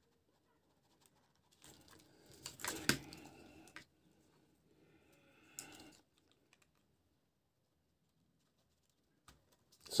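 Light plastic clicks and handling rustle from a Syma toy quadcopter's landing legs being pressed into the drone's plastic body, with one sharper click about three seconds in and another short rattle near six seconds.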